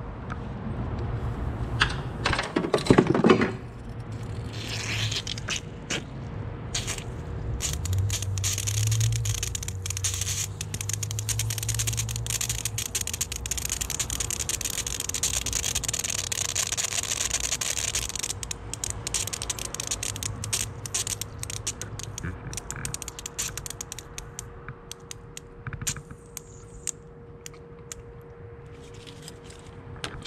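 Trapped air and coolant hissing and spitting out of an opened bleed point on a pressurized intercooler coolant circuit, with crackling clicks through it: air still being purged from the system. A loud metallic scrape comes about three seconds in, and a faint steady whine runs underneath.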